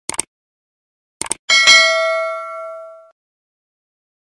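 Subscribe-button animation sound effects: two pairs of quick mouse clicks, then a single bell ding that rings out and fades over about a second and a half.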